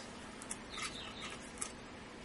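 Faint clicks of a CPU cooler's plastic push-pin fasteners being pressed and turned into the motherboard, twice, with a few faint high chirps in between.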